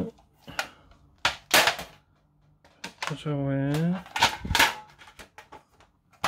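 Metal tin of Caran d'Ache watercolour pencils being handled: a handful of sharp metallic clacks and knocks from the tin and its lid, the loudest about one and a half and four and a half seconds in.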